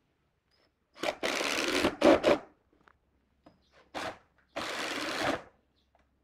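Cordless impact driver driving screws into wood in separate bursts: one about a second in lasting about a second, a short one just after, a brief one around four seconds, and a longer one near the end.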